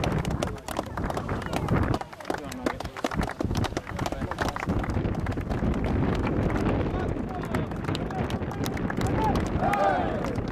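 Overlapping chatter of rugby players' voices, with many short, sharp slaps throughout from hands meeting as the players shake hands down the line.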